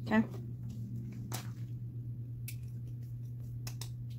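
A few sharp plastic clicks and taps as a mini heat press is set down on its plastic base and a warm acrylic keychain blank is picked up and handled, several in quick succession near the end, over a steady low hum.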